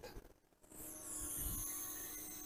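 A quadcopter with Foxeer Datura 2806.5 brushless motors hovers in position-hold, heard faintly. Its propellers give a low steady drone, with a high motor whine that wavers a little in pitch. The sound fades in about a second in.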